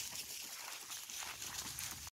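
Faint footsteps rustling and crunching through dry fallen leaves in an irregular pattern.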